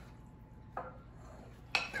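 Wooden spoon stirring sauce-coated cauliflower pieces in a glass bowl: soft scraping and knocking against the bowl, with a short louder scrape about a second in.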